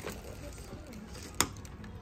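One sharp click about a second and a half in, from a button or switch on an Arcade1Up Star Wars pinball cabinet's control panel being pressed to try to turn the machine on, over a low steady background hum.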